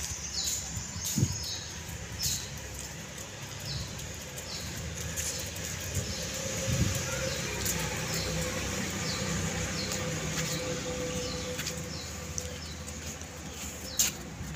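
A small bird chirping over and over in short, high, falling notes, roughly once a second, over a low steady background rumble.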